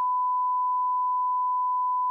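Censor bleep: a single steady, unchanging pure tone masking a bleeped-out word.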